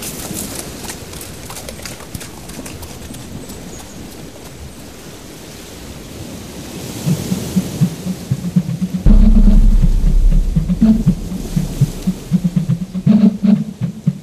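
Steady rush of sea surf breaking on the beach, then music entering about seven seconds in and swelling suddenly and loudly with a deep bass about nine seconds in.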